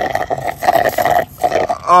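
Slurping through a straw at the bottom of a nearly empty cup of smoothie, air and liquid gurgling up the straw in a few pulls with short breaks between them.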